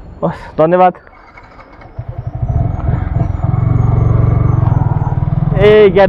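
Motorcycle engine pulling away from a stop, getting louder as it accelerates about two seconds in, then running steadily.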